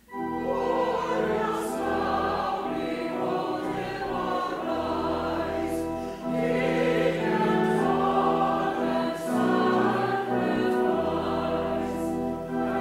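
Church choir singing with instrumental accompaniment under held low tones, starting suddenly and continuing throughout.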